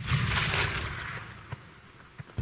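Distant detonation of a small explosive charge dropped from a drone onto a practice target: a bang whose rumble fades away over about a second and a half.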